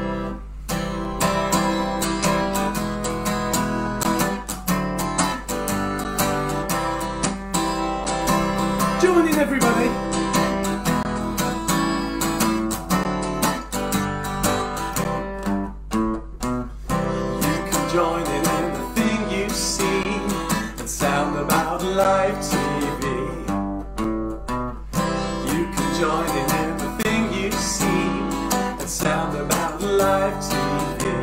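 Acoustic guitar strummed in a steady, even rhythm, with a man singing along in places.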